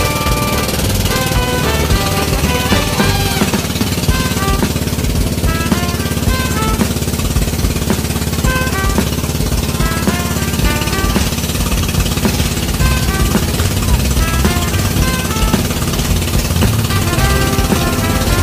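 Outrigger boat (bangka) engine running steadily underway, a rapid, even knocking beat. Background music with short melodic notes plays over it.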